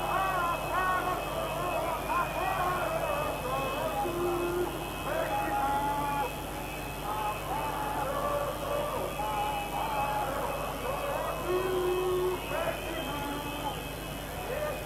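Many voices of a protest crowd shouting and chanting at once, overlapping so that no words stand out, with some drawn-out held notes. A steady low electrical hum runs underneath.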